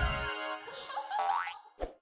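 Cartoon magic-puff sound effects as items vanish: a puff dies away just after the start, then a rising swoosh and a short pop near the end, over light children's background music.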